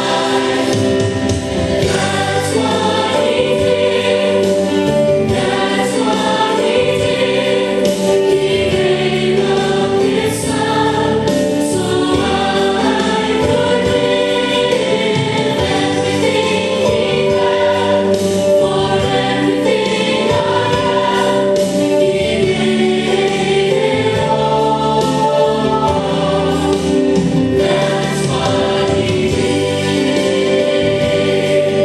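Upbeat Christian gospel song, a choir singing over band accompaniment, keeping up at a steady level throughout.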